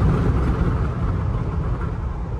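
Road and wind noise inside a Mahindra Thar's cabin, a steady low rumble that eases slightly as the SUV brakes from highway speed.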